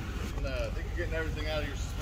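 Faint voices talking over a steady low rumble.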